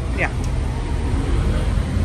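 Steady low rumble of city street traffic, loud enough that the voice is hard to hear over it.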